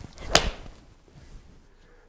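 A golf club swishing through the downswing and striking a ball off a hitting mat: one sharp crack of impact about a third of a second in.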